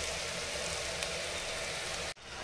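Potatoes and pointed gourd (parwal) frying in oil in a pan, a steady sizzle, as the dish is almost cooked.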